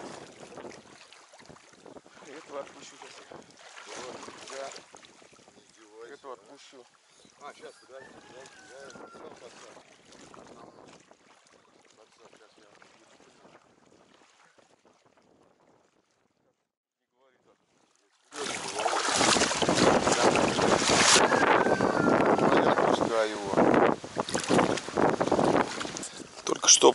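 Wind and water splashing at a low level, fading into a short near-silent gap. Then, about eighteen seconds in, loud wind buffeting the microphone begins suddenly, with waves lapping against a reedy bank.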